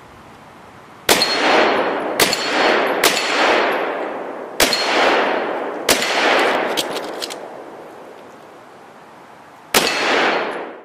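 Pistol shots fired live through a barricade port: five shots in the first six seconds, spaced about a second apart, and one more near the end, each followed by a long echo off the surrounding woods. A thin metallic ring follows several of the shots, the steel plate targets being hit.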